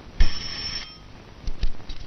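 Metal desk call bell struck once by hand, rung to summon someone: a single bright ding about a fifth of a second in that rings for about half a second. Two short knocks follow near the end.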